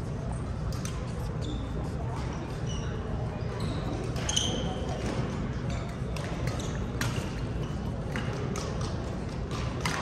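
Badminton rally: rackets striking a shuttlecock with sharp cracks every second or few, and shoes squeaking on the court mat, most around the middle. Under it runs the steady low hum and distant voices of a busy sports hall.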